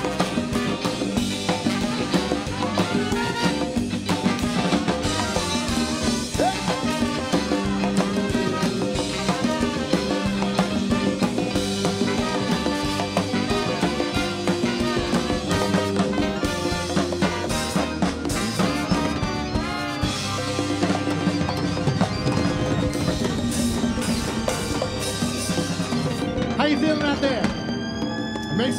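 A live Latin ska band plays an instrumental passage, with drum kit and timbales under saxophones and keyboard. Near the end the drumming stops and held notes ring on.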